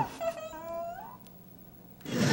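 A woman's short whimpering cry of pain that rises in pitch for about a second and then dies away.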